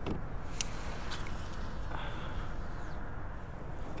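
A cast with a rod and fishing reel from a kayak: a few faint clicks, then a faint whir that falls in pitch as line pays out, over a steady low background noise.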